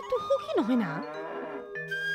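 A calf mooing over background music with steady held notes.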